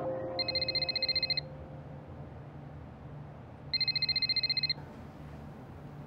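A telephone ringing: two trilling electronic rings, each about a second long, about three seconds apart.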